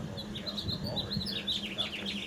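Small birds chirping in a quick run of short, high, falling notes, over a steady low hum.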